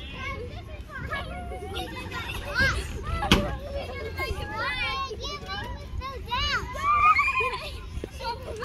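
Young children's voices at play: high-pitched squeals and calls. A single sharp knock sounds about three seconds in.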